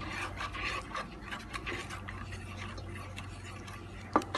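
Wooden spatula stirring a thick, milky agar jelly mixture in a non-stick pot, scraping and rubbing against the pot in irregular strokes, over a steady low hum.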